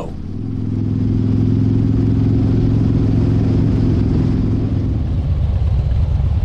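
Harley-Davidson V-twin motorcycle engine running at a steady speed while riding, growing louder over the first second and then holding one even note. About five seconds in it changes to a rougher, lower rumble.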